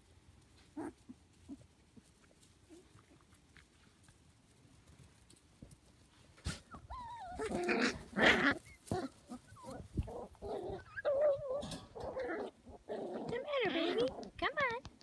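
Shetland sheepdog puppies vocalizing as they wrestle in play: after a quiet start, a run of squeaky, wavering whines and growls begins about halfway through and keeps going to the end.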